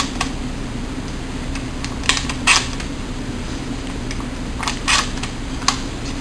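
12-gauge Franchi SPAS-12 shotgun being loaded by hand with game-load shells. Shells are pushed into the tube magazine with a few sharp metallic clicks, about two seconds in, again just before five seconds, and once more near the end.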